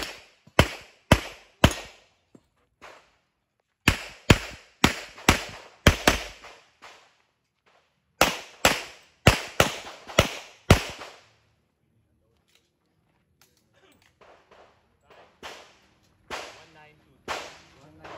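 Handgun firing rapidly in three strings of sharp shots about half a second apart: four shots, then about eight, then about seven, with pauses of a second or two between strings. Sparser, fainter cracks follow near the end.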